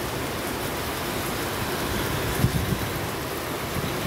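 Steady hiss of heavy rain falling, with a brief low thump about two and a half seconds in.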